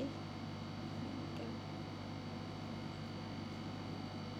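Quiet room tone with a steady low hum.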